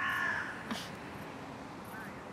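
A bird gives one short, harsh call right at the start, over faint outdoor background noise.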